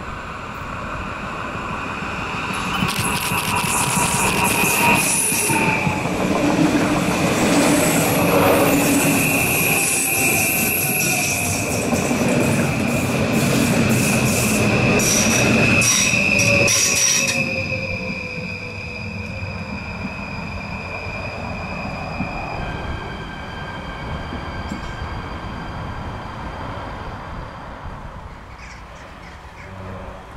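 NS Sprinter electric multiple unit running past on a curve. Its wheels squeal in a steady high-pitched whine, with a rapid run of clicks from the wheels over the rails. The sound builds over the first few seconds, is loudest in the middle, and fades after about 18 seconds.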